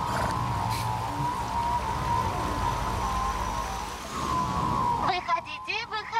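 Animated-series soundtrack: a steady sustained drone with a low rumble under it, then about five seconds in a voice starts with quick rising and falling chatter.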